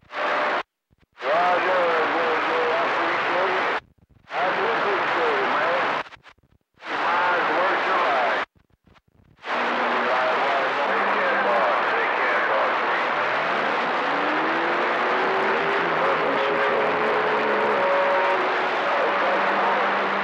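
CB radio receiver on channel 28 picking up static-laden skip: the hiss cuts in and out four times in the first ten seconds as the squelch opens and closes on short transmissions, then runs on steadily. Faint, unintelligible voices and wavering heterodyne whistles sit under the static, one whistle rising slowly about two-thirds of the way through.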